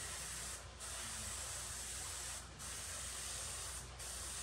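Airbrush spraying paint: a steady hiss of air and paint, broken three times by brief gaps as the trigger is let off, a little before a second in, about halfway through and near the end.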